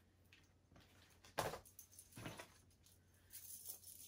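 Faint handling sounds of a gold metal chain strap being unclipped from a small clutch bag: a few light clicks, the sharpest about a second and a half in, with faint rustling near the end.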